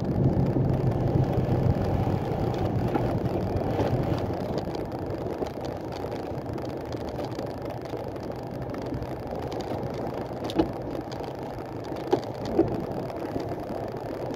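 Diesel engine of a Cummins-powered truck running under way, heard from inside the cab with road noise; the engine note eases quieter about four seconds in. A couple of brief knocks come near the end.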